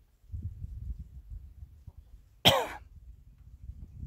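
A person coughs once, sharply, about halfway through, over a low rumble on the microphone.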